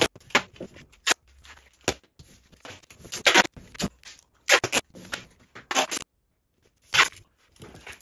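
Duct tape being pulled off the roll and torn into strips: a run of brief rips and a few longer pulls lasting up to half a second, with small knocks in between.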